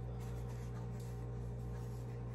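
Steady low electrical hum of the room, with faint rubbing as a small plastic Bluetooth speaker is turned over in the hands.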